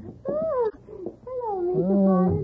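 Two short, high-pitched vocal calls whose pitch slides up and down, the second falling away into a lower, steadier tone near the end.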